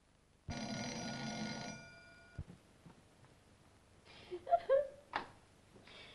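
An electric bell rings once for just over a second, then a click; near the end a person's voice makes a few short sliding sounds, louder than the bell, followed by a sharp click.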